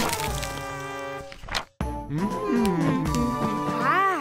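Cartoon soundtrack: a heavy thump at the start over held music, a short swish about a second and a half in, then a sudden break. After the break a character makes wordless vocal sounds that slide up and down over the music.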